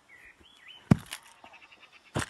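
A single sharp thump about a second in, followed by a few light scuffing clicks, as two kneeling aikido partners clash in an attack and push.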